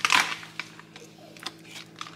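Handling noise: a short rustle right at the start, then a few faint clicks over a low steady hum.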